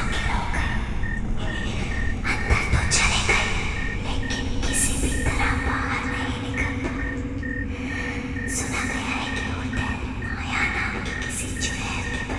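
Horror film underscore: a continuous low rumbling drone with a high tone pulsing on and off a few times a second, and hissing swells every couple of seconds.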